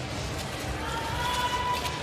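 Indoor rink ambience of a short-track speed skating race on the broadcast sound: a steady hiss of arena and ice noise, with a faint steady high tone coming in about half a second in.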